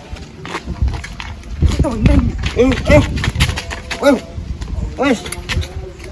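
A man's voice giving a string of short wordless calls, each rising and falling in pitch, about one every half second to a second, over a low rumble.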